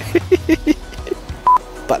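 A man laughing in a quick run of short bursts, then a single short high beep tone about one and a half seconds in, over background music.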